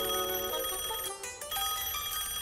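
Cartoon telephone ringing: a steady ring of about a second, a short break, then the ring again.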